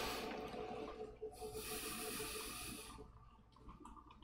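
A rushing hiss that swells about a second in, holds for roughly a second and a half, then fades.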